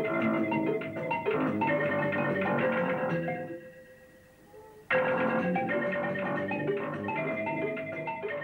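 Soundbeam-triggered synthesizer playing rapid flurries of marimba-like notes over a few held tones. One flurry fades out about three and a half seconds in, and a new one starts suddenly about five seconds in.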